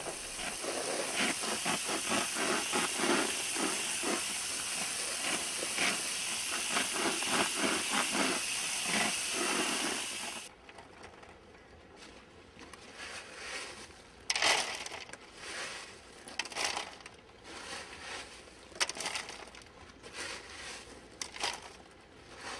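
Garden hose spray nozzle jetting water onto a crate of used lava rock filter media, a steady hiss with water spattering off the rocks. It stops abruptly about halfway through, and scattered short clatters of lava rock being scooped into a plastic crate follow, much quieter.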